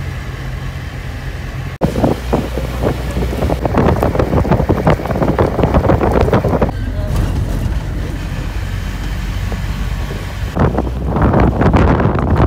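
A vehicle driving on a wet road, heard from inside with the window open: a steady low engine and road rumble under gusts of wind buffeting the microphone. The sound changes abruptly about two seconds in, and the wind noise eases in the middle before picking up again near the end.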